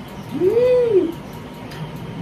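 A single short hummed vocal sound from one person, its pitch rising and then falling in one smooth arch, lasting under a second.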